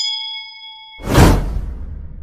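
Sound effects for a subscribe-button animation: a bell ding rings on steadily after a click, then cuts off about a second in as a loud whoosh with a deep rumble takes over and fades.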